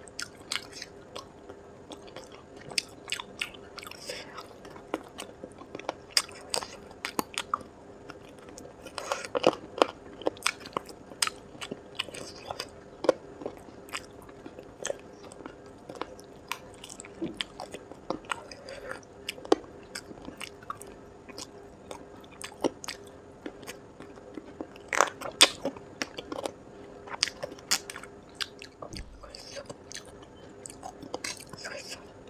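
Close-miked eating: biting and chewing chicken tikka pulled off the drumstick bone, with many sharp mouth clicks at irregular intervals over a faint steady hum.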